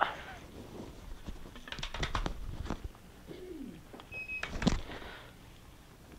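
Scattered knocks and clicks as a water bottle is handled and set into the gripper of a JACO assistive robotic arm, with a short sound falling in pitch in the middle.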